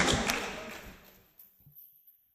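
Indoor basketball game noise, with ball bounces and players' voices on a hardwood court, fading out over about a second and a half to near silence, with one sharp tap early in the fade.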